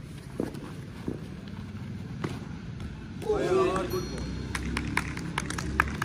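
A few isolated sharp knocks, then a man's loud shout a little past three seconds in, followed by a quick run of hand claps near the end.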